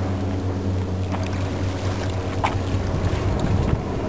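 A low, steady engine hum, with two faint clicks about a second and two and a half seconds in. Wind rumble on the microphone grows near the end.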